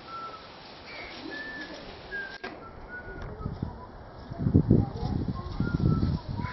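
Birds calling in the garden: scattered short, high whistled chirps. About two-thirds of the way in, a burst of loud low rumbling noise comes in and runs on to the end, louder than the birds.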